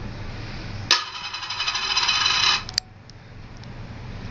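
A coin dropped into a plastic coin tray, landing with a sharp click about a second in and then spinning and rattling in the dish for nearly two seconds, growing louder, before it stops suddenly with a final click.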